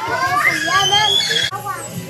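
Young children's high-pitched voices shouting and squealing in play, loudest over the first second and a half and breaking off suddenly.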